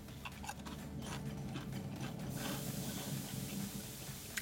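A crisp Pringles chip being bitten and chewed: a run of short crunching crackles over the first couple of seconds, then softer chewing, over a low steady hum.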